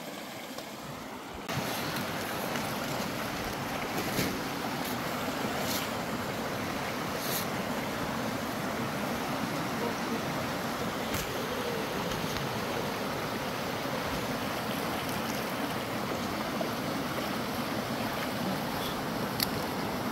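Shallow rocky stream rushing and splashing over stones, a steady water noise that gets louder about a second and a half in, with a few faint clicks.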